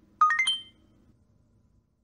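A cheap camcorder's power-on jingle as its flip-out screen is opened: a quick rising run of four or five electronic beeps lasting about half a second.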